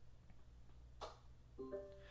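Near silence broken by a single sharp click about a second in, a smart plug's relay switching the room lights off on a voice command, then a short electronic tone of a few steady stepped notes from an Amazon Alexa speaker confirming it.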